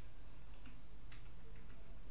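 A few faint, evenly spaced ticks, about two a second, over a steady low hum.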